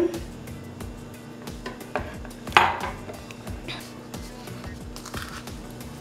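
Small clinks and taps of a metal whisk and a glass measuring cup against a plastic mixing bowl as oil is poured into beaten eggs and milk, with one louder clink about two and a half seconds in. Soft background music runs underneath.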